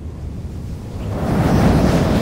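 A low, rushing rumble of noise that swells from about a second in and is loudest near the end, like a surge or whoosh effect on the soundtrack.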